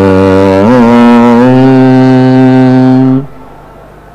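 A man singing in Carnatic style into a microphone, holding one long vowel note that bends briefly in pitch about a second in and then stops just after three seconds in, leaving a faint steady background hum.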